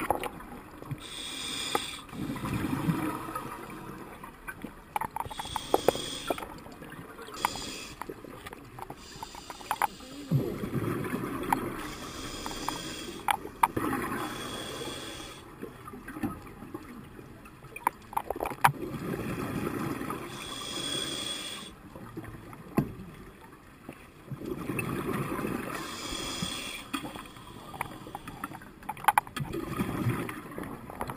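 Scuba regulator breathing underwater. Short hissing inhalations alternate with longer bubbling exhalations every several seconds, with scattered small clicks and knocks of diving gear.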